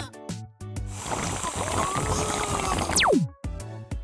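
Cartoon sound effect of a nasal aspirator sucking up snot: a wet suction noise over background music, ending about three seconds in with a fast falling whistle.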